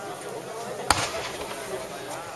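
A single black-powder musket shot about a second in: one sharp crack.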